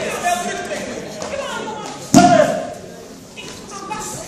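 Voices calling out in a large, echoing hall. About halfway through comes a sudden loud thump with a shout over it, the loudest moment.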